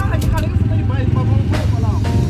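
Quad bike (ATV) engines idling with a steady low rumble, under people's voices.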